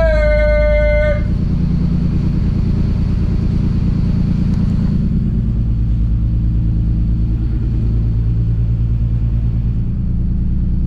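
Nissan RB26DETT twin-turbo straight-six of an R32 Skyline GTR idling with a steady low rumble. A short high-pitched tone, about a second long, sits over it at the start.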